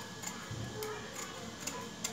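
Scissors cutting through thin blouse fabric in a series of snips, a sharp click each time the blades close, about four in two seconds.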